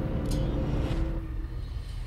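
Movie-trailer sound design: a low, steady rumble with a held droning tone and a single sharp click about a quarter second in.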